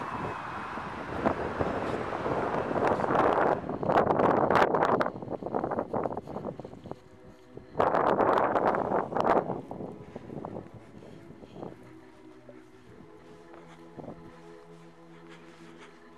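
Wind buffeting the microphone in loud, uneven gusts through the first ten seconds, then dropping to a quiet background with a faint low steady hum.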